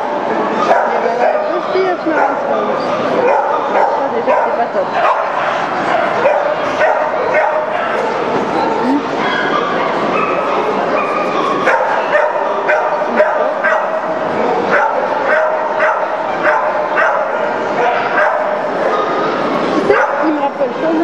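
Many dogs barking and yipping at a dog show, with short sharp barks scattered all through, over the steady chatter of a crowd in a large reverberant exhibition hall.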